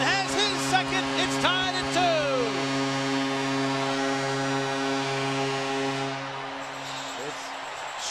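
Ice hockey arena goal horn blaring one long steady blast after a home-team goal, over a cheering crowd; the horn cuts off about seven seconds in.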